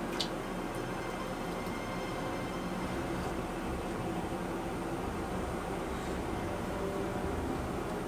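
Steady background hiss with a faint hum, and one faint click just after the start.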